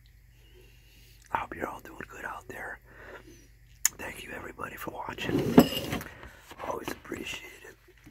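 A man whispering to the microphone, with one sharp click a little under four seconds in.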